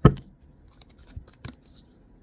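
Tarot cards handled and shuffled by hand: one sharp snap of the cards right at the start, then a few light clicks of cards about a second in.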